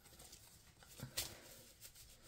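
Paper banknotes being handled quietly, with two short rustles about a second in.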